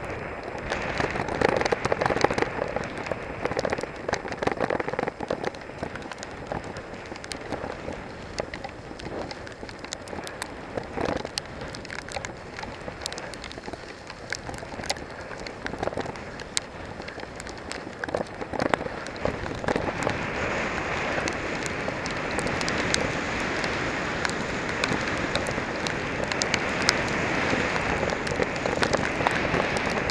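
Storm wind buffeting a helmet-mounted camera's microphone on a mountain bike descending a muddy trail, with the hiss of tyres and spray through wet mud and many short clicks and knocks from the bike over rough ground. The hiss grows louder about two-thirds of the way through.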